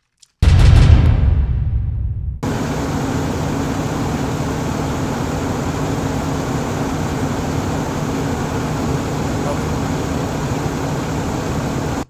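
A couple of seconds of loud, bass-heavy phone-video audio stop abruptly. A steady outdoor din of voices and vehicle noise follows.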